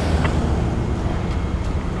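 A steady low rumble with an even background hiss, with a faint short click just after the start.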